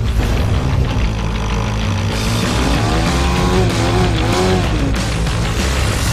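Loud rock-style music, dense and steady, with a pitched line gliding up and down in the middle.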